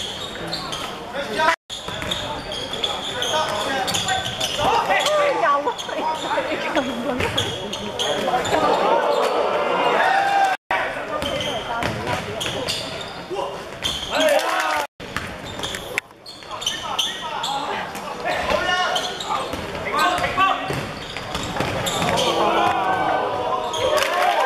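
Basketball game sound in an echoing gym: the ball bouncing on the hardwood court amid players' and spectators' shouts. The sound is broken by a few abrupt cuts, one near the start, one about halfway and two close together a little later.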